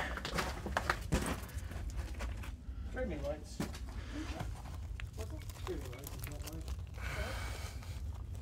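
Boots crunching and scraping over loose blasted rock, with scattered sharp clicks of rock fragments shifting underfoot, over a steady low rumble.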